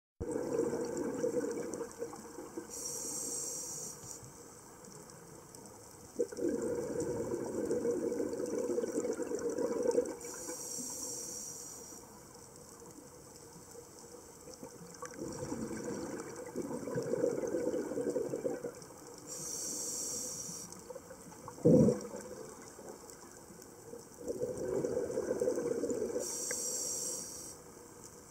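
Scuba diver breathing through a regulator underwater, heard about four times over: each breath is a short hiss of inhalation followed by a longer bubbling exhale. A single sharp click stands out about two-thirds of the way through.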